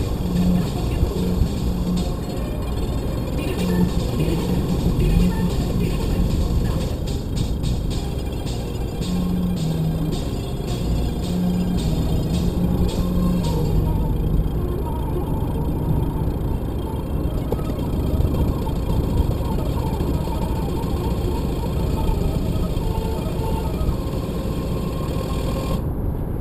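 Steady engine and road noise inside a car cabin at motorway speed, with music playing over it.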